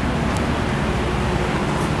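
Steady rushing machine noise with a low hum underneath, holding level throughout.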